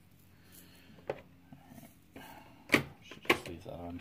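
Small plastic containers of diamond-painting drills being opened and handled: sharp clicks and taps, one about a second in and the two loudest about half a second apart near the end.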